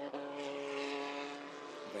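Engines of a pack of small single-seater race cars running at speed, a steady drone that eases off a little near the end.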